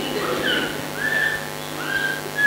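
Steady electrical hum from the recording or sound system, with several faint, short, high chirping calls over it.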